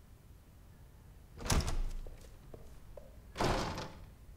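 Two loud thuds about two seconds apart, each trailing off over about half a second.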